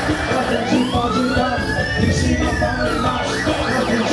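Live band music with a siren-like tone laid over it, sweeping slowly upward for about two seconds and falling back, then a quick run of short rising chirps near the end.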